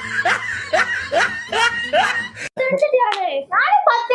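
Laughter in short rising bursts, about two a second. It stops at an abrupt cut about two and a half seconds in, after which a voice speaks.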